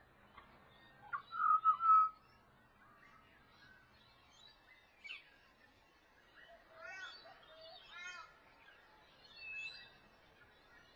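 Pied butcherbird singing flute-like notes: a loud held phrase about a second in, then a run of upswept notes around the middle, and one higher note near the end.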